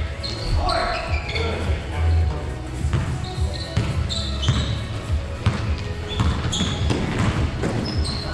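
Basketball bouncing and thudding on a hardwood gym floor amid short, high squeaks of sneakers and players' shouts, all echoing in the large hall.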